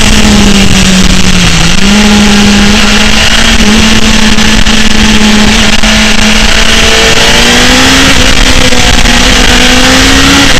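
BMW S1000RR inline-four sport-bike engine at high revs, heard from an onboard camera at track speed under heavy wind noise. Its pitch dips briefly about a second and a half in, then holds steady and climbs slowly near the end as the throttle is opened.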